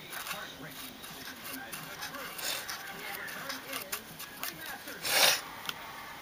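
Soft scratching and rubbing of a brush working weathering chalk onto a plastic HO-scale locomotive shell, with small clicks of handling, and a louder rustle about five seconds in.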